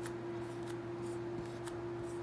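Marker pen writing on a white board: faint short scratchy strokes as letters are drawn, over a steady hum.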